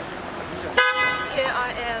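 A car horn sounds once, a short flat honk about a second in, over steady city-street traffic noise.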